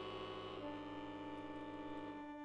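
Accordion holding a dense sustained chord of many reed tones; about half a second in, part of the chord drops away, leaving a few held notes sounding.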